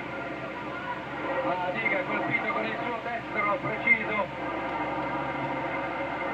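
Fight crowd shouting and calling out at a boxing match, swelling from about a second and a half in and peaking near the middle, over a steady hum from an old television soundtrack.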